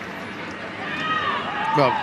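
Steady stadium crowd noise just after a goal, with a distant raised voice calling out about a second in.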